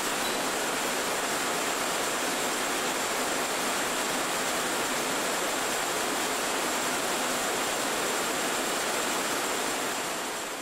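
Steady, even hiss with a faint thin high whine, without any machine rhythm or knocks: background noise of an old analogue video recording rather than the jacquard at work.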